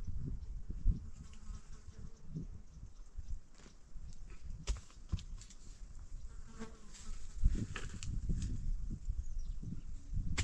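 Flying insects buzzing close by, over a low rumble with scattered light clicks and knocks, several of them about five and eight seconds in.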